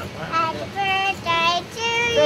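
A young child singing in a high voice, a few short held notes one after another.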